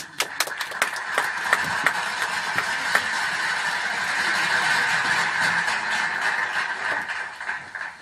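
A few separate hand claps that swell into a dense round of applause, which fades out near the end.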